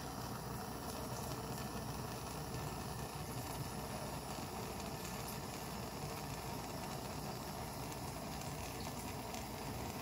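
Gas torch flame burning steadily, heating gold in a crucible toward melting.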